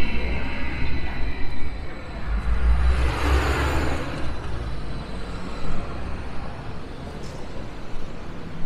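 Sirietto tram running close by in the street: a low rumble with a hiss and a high whine that swell about three seconds in, then fade.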